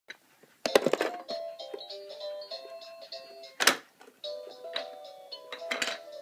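Electronic baby push-walker toy playing a simple beeping tune, one note after another. Three loud clatters break in, about a second in, midway and near the end.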